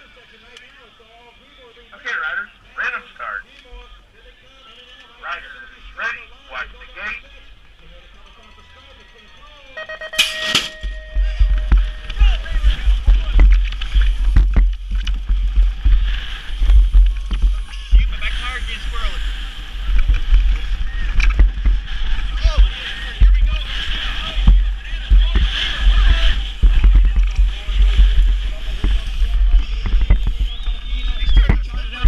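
BMX race start from a helmet camera. A few short voice calls come from the gate's start cadence, then at about ten seconds there are steady tones and a sharp clang as the start gate drops. After that, heavy wind buffeting on the camera and tyre noise run throughout while the rider races down the track.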